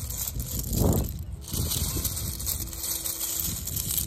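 Wind blowing across the microphone: a steady low rumble with a hiss above it, swelling in a stronger gust about a second in.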